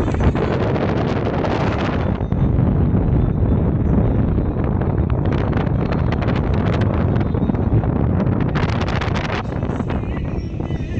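Wind buffeting the microphone of a camera filming from a moving vehicle: a loud, steady rumble with spells of crackly hiss that come and go.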